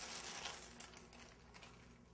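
Faint rustle of parchment paper being handled, dying away in the second half.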